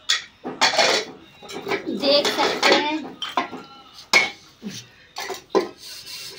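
Metal cooking pots and utensils clanking and clattering against each other as they are washed by hand, with sharp knocks and brief ringing.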